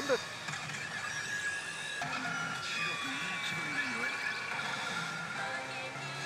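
e Hana no Keiji Retsu pachinko machine playing its electronic music and sound effects during an on-screen performance: layered steady tones with short sliding chirps. It opens with a brief shouted call of "renbu".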